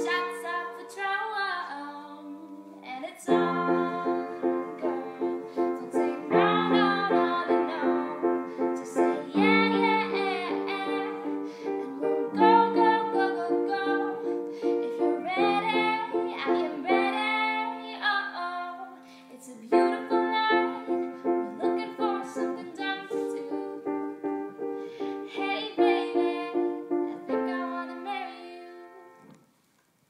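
A woman singing while accompanying herself on piano, playing steady repeated chords under her melody. The song dies away shortly before the end.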